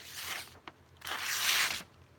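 Knife blade slicing through a held sheet of lined notebook paper, a paper-cutting test of a freshly sharpened edge: a soft rustle, then about a second in a louder hiss of the cut lasting under a second.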